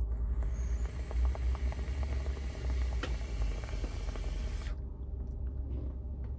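Vape atomizer on a tube mod firing during a long draw: a steady sizzling hiss of the coil vaporising e-liquid as air is pulled through it, with faint crackles, cutting off suddenly about three-quarters of the way through. The coil is a very low-resistance build.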